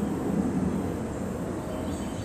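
Steady outdoor background noise: an even low rumble with hiss and no distinct events.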